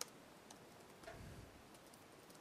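Faint keystrokes on a computer keyboard: scattered soft clicks, the sharpest right at the start and another about half a second in, over near silence.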